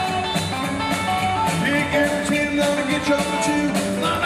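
Live rockabilly band playing: a hollow-body electric guitar, upright bass and a stand-up drum kit, with a man singing lead.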